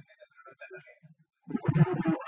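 Speech: a man talking faintly, then a man speaking into a handheld microphone, louder, from about one and a half seconds in.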